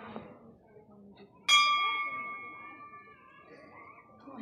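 A temple bell struck once about a second and a half in, ringing with several clear tones that slowly fade, over faint voices in the background.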